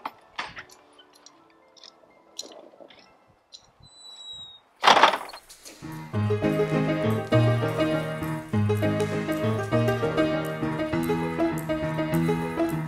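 A heavy wooden door is opened, with scattered knocks, a short high squeak near four seconds and a thud about five seconds in. From about six seconds, instrumental music with a steady beat takes over.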